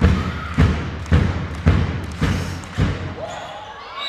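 A handball being bounced on a sports-hall floor: a steady dribble of about six bounces, roughly two a second, each with a short echo, fading out after about three seconds.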